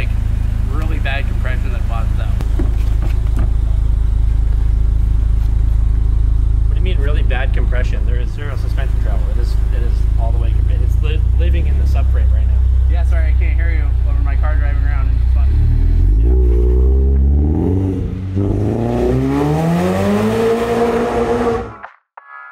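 Car engine running with a steady low rumble under talk, then revving up in several rising sweeps over the last few seconds before cutting off suddenly.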